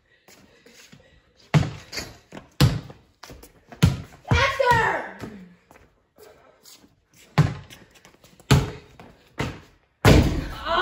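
Basketball bounced on a concrete floor, single loud bounces at uneven intervals, about six in all, with a short burst of voice about four and a half seconds in.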